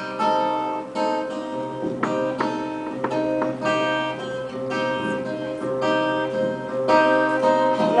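Acoustic guitar playing an instrumental passage of a song, with plucked chords ringing out note by note and no voice.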